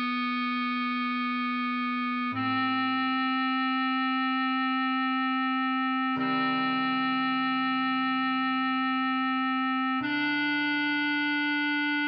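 Bass clarinet playing a slow melody in long held notes of about four seconds each, moving to a new pitch about two, six and ten seconds in.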